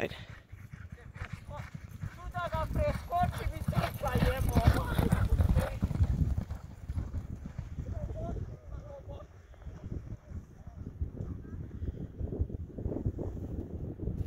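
Two racehorses galloping on a dirt track: rapid, drumming hoofbeats that grow loudest about four to six seconds in as the pair passes, then fade as they gallop away.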